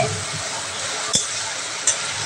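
Food frying in hot oil in a pan, a steady sizzle, with two sharp clinks of a utensil against the pan, about a second in and near the end.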